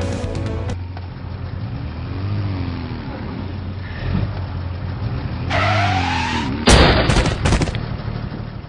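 A car driving, then its tyres screech with a sliding pitch for about a second, followed at once by a loud, sudden crash of several impacts.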